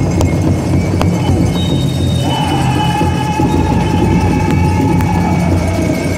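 Powwow drum and singers: a steady drum beat under high-pitched voices holding a long note about two seconds in, which steps down in pitch near the end.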